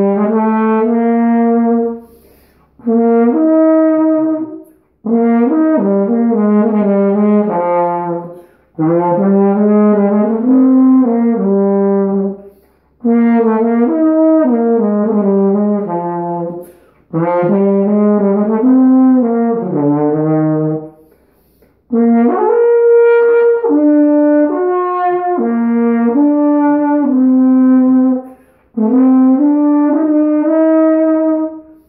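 Carl Fischer ballad horn, a valved brass horn of the flugelhorn family, played with a cornet-sized mouthpiece in B-flat. It plays a slow melody of held notes in about eight phrases, each broken by a short breath.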